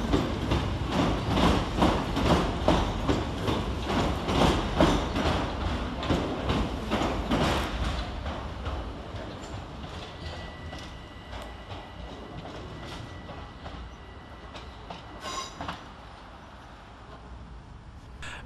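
Southeastern Class 377 Electrostar electric multiple unit departing, its wheels clicking over the rail joints in paired clicks about two a second. The clicking fades away after about eight seconds as the train pulls out.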